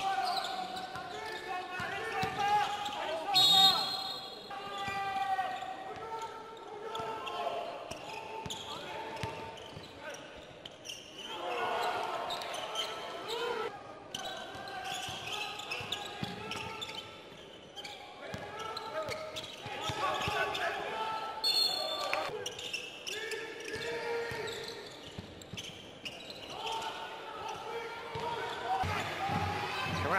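Live basketball game sound in an arena hall: voices of players and spectators calling out, over a ball bouncing on the court.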